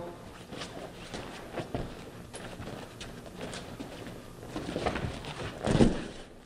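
Feet scuffing and shuffling on foam grappling mats as two men square up and one throws a jab. Near the end comes a heavy thud of bodies hitting the mat in a body-tackle takedown.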